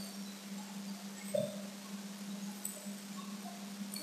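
A steady low hum with a few faint, short ringing tones at scattered pitches.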